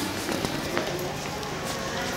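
Indistinct voices with footsteps.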